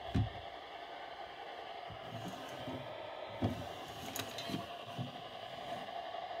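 A plastic weather radio is handled and shifted on a wooden shelf, giving several soft knocks and a sharp click about four seconds in, over a steady hum.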